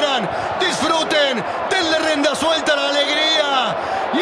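A man's excited, shouted commentary running on without a break, with some long drawn-out cries.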